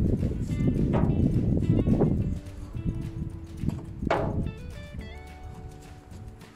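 Background music: a melody of steady notes with a few sharp percussive knocks. For about the first two seconds it sits under a loud, noisy rush.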